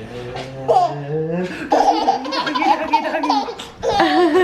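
A baby laughing in long, wavering, high-pitched bouts from about a second and a half in, after a man's low voice glides upward.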